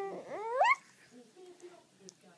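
A one-year-old baby's vocal sound: a held note that sweeps sharply upward into a high squeal and stops within the first second, followed by faint quiet sounds.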